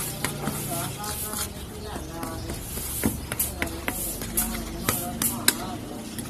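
Metal spoon stirring dry flour in a bowl, with irregular sharp clicks and scrapes as it strikes the side of the bowl.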